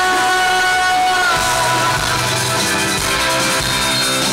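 Rock band playing live and loud: electric guitars, bass and drum kit. A held sung note ends about a second in, and the band carries on without vocals.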